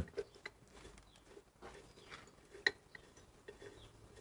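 Faint, sparse metallic clicks and ticks as a bolt is turned in by hand on a motorcycle's rear brake caliper, the loudest tick a little after halfway.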